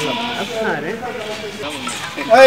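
A goat bleating, with people's voices over it.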